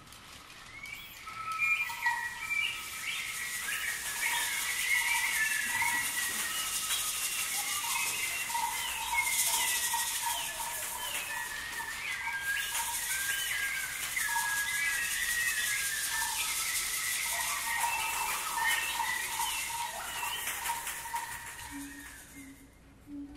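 Bird-call whistles blown by members of a men's choir make a stream of chirps, trills and warbling glides, with runs of quick repeated peeps. Under them a rainstick gives a steady high hiss that grows louder in the middle.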